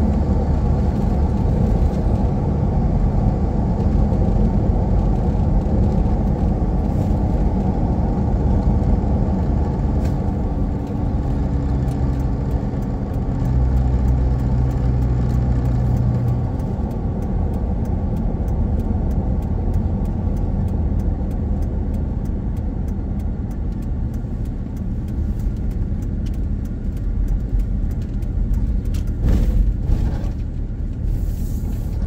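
Car driving along a paved highway, heard from inside the cabin: a steady low rumble of tyre and engine noise. The engine hum grows stronger for a few seconds around the middle.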